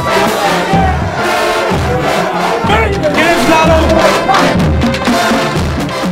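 A group of football players shouting and yelling together, fired up, over music with a steady bass-drum beat about once a second.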